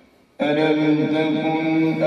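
A male qari reciting the Quran in slow, melodic tartil style. After a short pause his voice comes in about half a second in, loud and held on long drawn-out notes.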